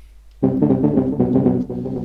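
A deep, Moog-style synth bass made with FL Studio's Sytrus synthesizer plays briefly. It starts abruptly about half a second in and fades out near the end.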